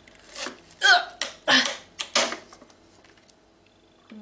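A woman's short breathy gasps and a drawn-out 'uh' of disbelief, a few quick bursts in a row, with a light click or two among them.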